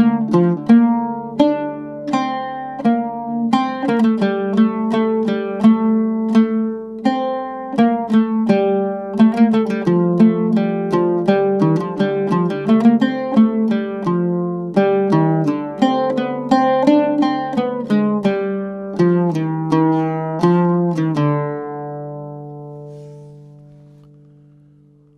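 Solo oud plucked in a quick, steady run of notes, playing a traditional melody in maqam Bayati on D. It ends on a held note that rings out and fades over the last few seconds.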